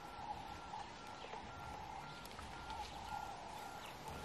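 A bird repeats one short note about twice a second at an even pace, faint, over a steady background hum.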